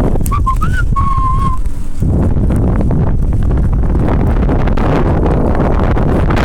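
A person whistling a few short notes, one sliding up, then a longer held note with a slight wobble, all in the first second and a half. Under it, steady wind buffets the microphone of a phone on a moving bicycle.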